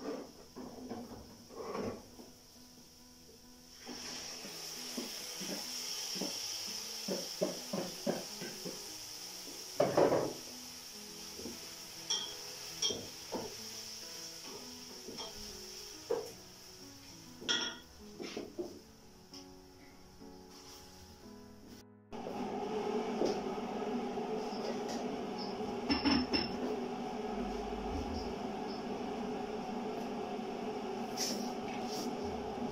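Pots, lids and utensils clinking and knocking at a stove, with sharp clinks scattered through, over background music. The background music changes abruptly about two-thirds of the way in.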